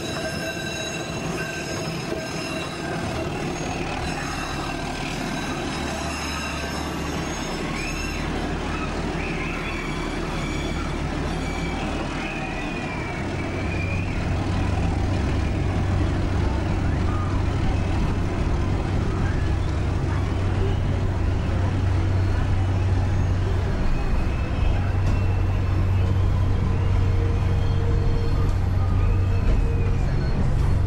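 Passenger train running on rails, heard from inside the coach: a high wheel squeal rings for the first several seconds, then a louder low rumble takes over from about halfway through.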